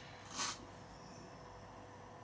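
A brief breathy sniff about half a second in, followed by a faint steady hum of room tone.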